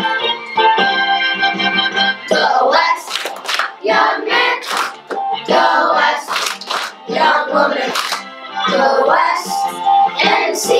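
Children's chorus singing a musical-theatre song over a keyboard accompaniment. The first two seconds are instrumental, then the voices come in.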